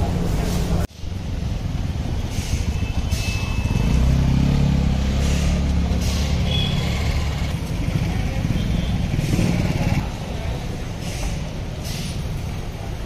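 For the first second, a metal spatula scrapes and clinks on a hot tawa over sizzling food. It cuts off sharply and gives way to street traffic: a motor vehicle engine runs with a low rumble that swells midway, with faint voices in the background.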